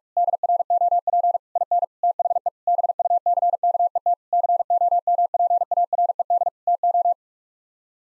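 Computer-generated Morse code at 45 words per minute: a single steady pitch keyed in rapid dits and dahs, spelling out the phrase 'a drop in the bucket compared to'. It stops about seven seconds in.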